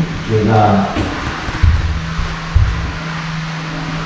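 Background music with a steady held low note and a few low thumps, with a brief voice near the start.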